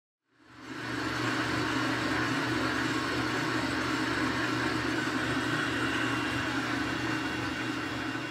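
Burke horizontal milling machine running, a steady mechanical hum that fades in during the first half second and holds even.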